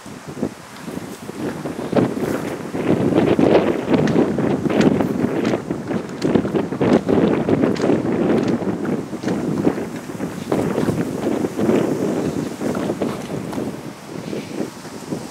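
Wind buffeting the microphone: a loud, gusting rumble that swells about two seconds in, with many short knocks and scuffs through it.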